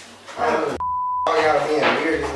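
A censor bleep: a single steady high-pitched beep of about half a second, about a second in, with all other sound cut out beneath it, blanking out a word of speech.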